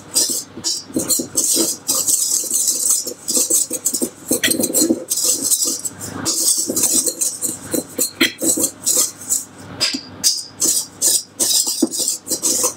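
Wire whisk rattling and scraping against the inside of a stainless steel mixing bowl as dry flour and cocoa are whisked together: quick, irregular strokes, several a second.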